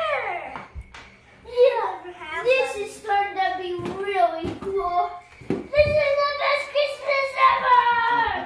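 A young child's high voice, vocalizing in drawn-out, sliding tones that the recogniser did not catch as words, with a few clicks and knocks of toy handling.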